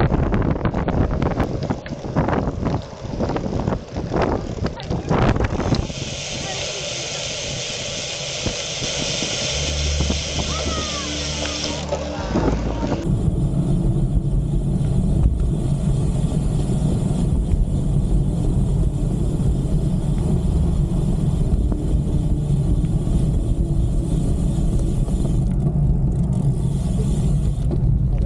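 Wind buffeting the microphone of a camera on a moving bicycle, with road noise. It is gusty at first, turns to a steady hiss about six seconds in, and becomes a steady low rumble about seven seconds later.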